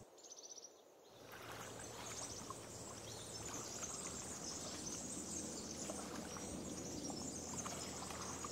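Steady outdoor background noise, an even hiss that fades in about a second in, after a few soft quick ticks in the first second.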